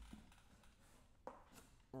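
Near silence: room tone, with one faint tap a little past halfway.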